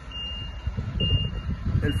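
Vehicle reversing alarm beeping a single high tone about once a second, three beeps, over the low engine rumble of a large vehicle passing close by.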